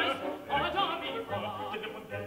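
Operatic tenor and baritone singing with orchestra, the voices held with vibrato over the orchestra's sustained low notes.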